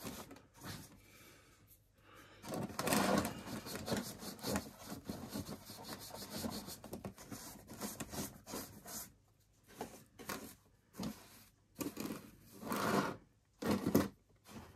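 Small bristle brush scrubbing WD-40 over a Traxxas Summit RC truck's plastic body shell and its small metal screws: irregular scratchy brush strokes in bursts, with short pauses.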